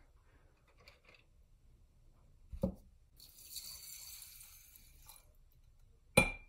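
Grain alcohol poured from a glass measuring cup onto shellac flakes in a glass jar: a steady hiss of pouring liquid, starting about three seconds in and lasting about two seconds.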